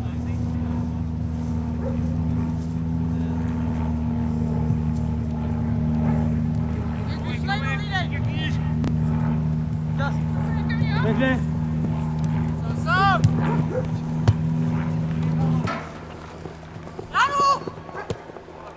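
A steady low mechanical hum, like a motor running, that cuts off suddenly a couple of seconds before the end. Short shouts from the pitch sound over it.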